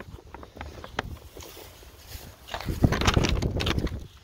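A printed paper sheet rustling and crinkling as it is handled and pressed flat against a wooden fence post, a dense crackle that grows loud over the last second and a half.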